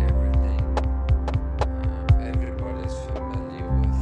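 Experimental electronic music: a deep held bass hum and several sustained synth tones under a run of sharp percussive clicks. A heavier bass swell comes back near the end.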